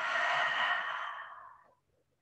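A woman's long, audible exhale, fading out about a second and a half in.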